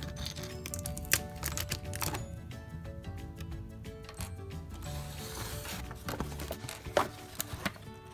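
Background music with steady held notes, over a few sharp clicks and rustles of toy packaging being handled.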